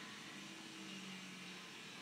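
Faint room tone: a steady low hiss with a faint hum.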